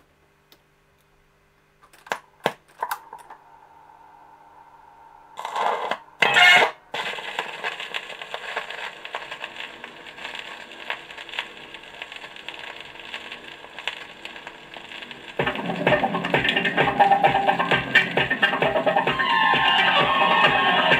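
Portable record player: a few light clicks as the tonearm is handled, two louder thumps as the stylus is set down on a 33 rpm vinyl single, then crackling surface noise from the lead-in groove. About fifteen seconds in, the recorded music starts, louder, with a steady beat.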